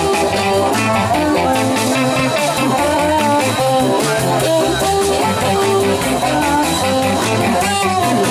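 Live band playing: electric guitar, bass guitar and drums with an amplified harmonica played into a cupped handheld microphone, its notes bending in pitch over a steady beat.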